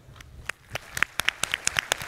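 Applause starting about half a second in: scattered individual claps that quickly grow denser.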